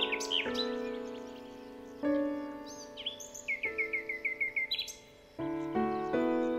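Songbirds chirping over slow, gentle background music of held chords. A few quick sweeping calls come near the start, and a run of about eight rapid repeated notes sounds around the middle.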